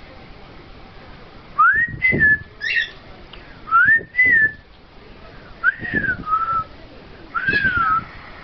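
Whistling: four short whistled phrases, each gliding up and then falling away, spaced about two seconds apart, with a brief chirp after the first.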